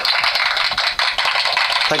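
Recorded applause sound effect: a steady, dense clapping that fills the pause.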